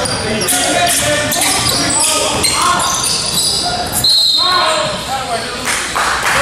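Basketball game play in an echoing gym: a ball dribbled on a hardwood court, sneakers squeaking, and players and spectators calling out.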